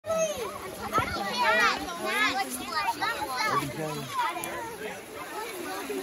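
A group of children talking and calling out over one another in high voices.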